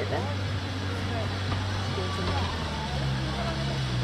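Slow-moving vintage train, a wooden coach pushed by a small steam tank locomotive, rolling along the track: a steady low rumble and hum that shifts in pitch about halfway through.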